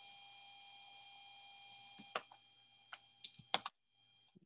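Faint clicks of a pen stylus tapping a tablet screen: four or five sharp ticks in the second half. Before them a faint steady electronic whine stops about halfway.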